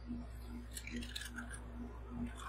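Sun Chips snack chips crushed in a gloved hand, a brief run of dry crackling about a second in, over a steady low hum.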